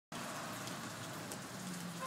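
Steady outdoor background hiss with no distinct events, like light rain or wind and distant traffic.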